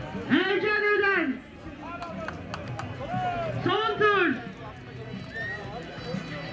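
A man calls out twice in long drawn-out shouts, each rising and then falling in pitch. Between the shouts come a few hoofbeats of rahvan horses on a dirt racetrack.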